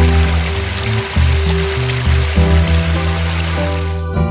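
Water of a small creek cascade splashing steadily over rocks into a pool, under background music with sustained low notes. The water sound cuts off suddenly at the end.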